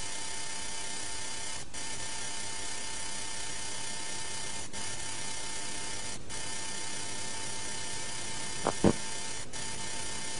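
Steady tape hiss with a faint constant hum tone from an old analogue videotape recording of a TV broadcast, dropping out for an instant a few times. A short low thump about nine seconds in.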